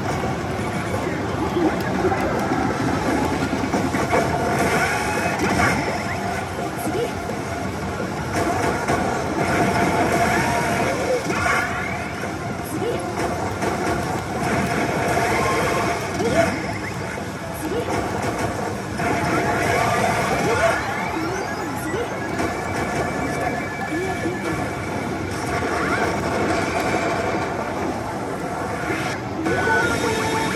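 Kabaneri of the Iron Fortress pachislot machine playing its chance-zone audio: music, character voice lines and rising effect sounds. Behind it is the steady din of a pachinko hall.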